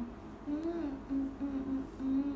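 A young woman humming a short tune with closed lips: a few held notes, rising slightly about half a second in and then staying level.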